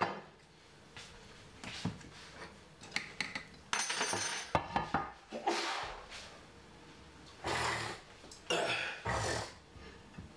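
Intermittent kitchen clatter: short knocks and clinks of pots and utensils, with a brief ringing clink about four seconds in and two short scraping or rustling stretches near the end.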